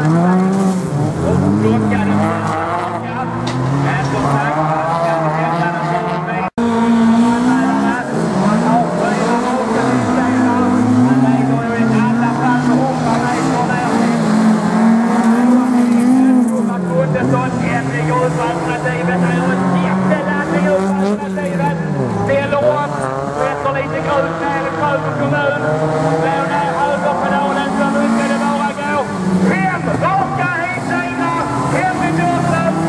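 Several folkrace cars racing, their engines revving hard, pitch climbing and falling again and again as they accelerate and shift gears. The sound breaks off for a moment about six and a half seconds in.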